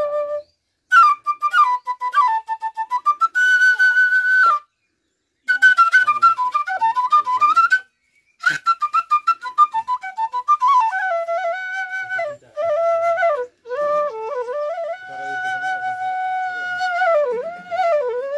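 Arohan D-middle bamboo flute (bansuri) played solo: a melody in quick runs of short, ornamented notes, broken by several short pauses for breath. In the second half it holds one long note, then bends down and settles on a lower note near the end.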